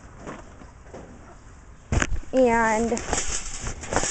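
Faint rustling and handling noise, then a sharp knock about two seconds in, followed by a drawn-out spoken "and" over a high rustling hiss as the camera is moved.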